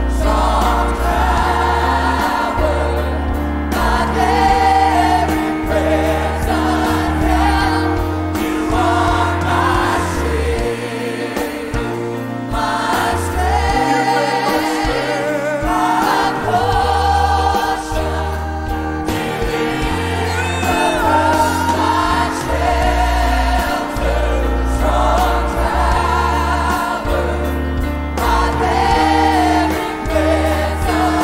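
Live gospel praise-and-worship song: a male lead singer and a small group of backing singers over a band with bass guitar and keyboard. A strong bass line holds low notes that change every second or two.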